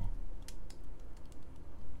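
Light typing on a computer keyboard: a handful of soft, irregular key clicks over a faint low hum.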